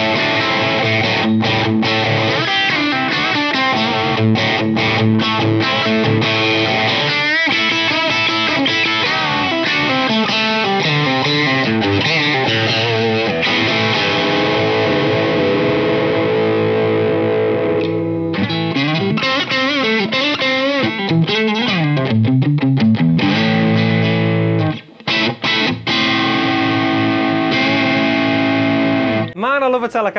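Fender American Vintage II 1951 Telecaster played through a Blackstar St. James 6L6 valve amp set with some overdrive: chords and riffs ringing out. There are a few short breaks in the playing about five seconds before the end.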